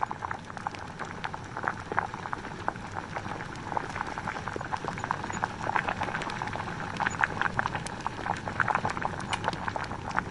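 Liquid bubbling at the boil in a glass distillation flask heated from below, with a steady stream of irregular small pops that grows busier about halfway through.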